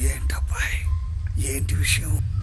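Speech only: a man asking a short question in Telugu, over a steady low hum.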